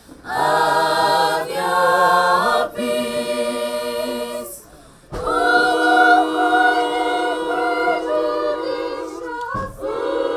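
A choir of schoolgirls singing a cappella: a few sung phrases, a short pause a little before halfway, then one long held chord that breaks off briefly near the end.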